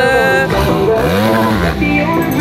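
Motocross dirt bike engines running on the track, with one engine's revs rising and falling once about halfway through.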